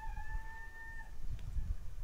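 A rooster crowing: one long, steady held note that breaks off about a second in.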